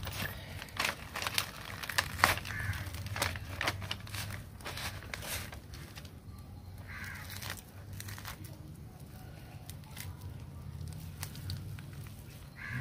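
Fibrous pulp of a ripe palmyra palm fruit being pulled apart by hand, the fibres tearing with irregular crackles and snaps. The snaps come thick and fast for the first half, then grow sparse.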